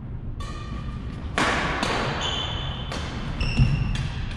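Badminton doubles rally in a gym hall: sneakers squeak on the hardwood floor several times, a racket hits the shuttlecock with a sharp smack about one and a half seconds in, and a heavy footfall thuds near the end.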